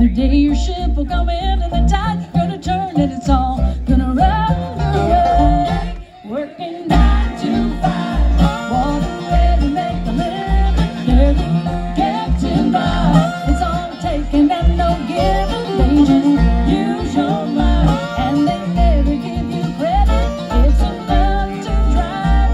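Live bluegrass band playing an instrumental break on fiddle, mandolin, banjo, acoustic guitar, resonator guitar and upright bass, over a steady bass beat. The band drops out briefly about six seconds in, then kicks back in.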